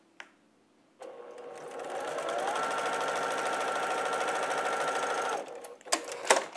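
Baby Lock Accomplish sewing machine stitching a seam: it starts about a second in, speeds up with a rising whine to a steady run, and stops shortly before the end.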